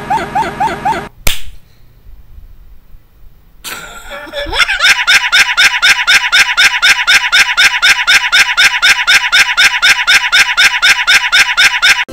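Loud looped audio played over the recording: one short sound repeated rapidly, about five times a second. A sharp click just over a second in breaks it, followed by a quieter stretch of a few seconds before the rapid repeats return louder.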